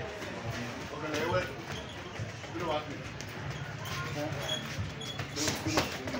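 Scattered thuds from boxers sparring in a ring, under background voices of onlookers, with two sharp impacts close together near the end.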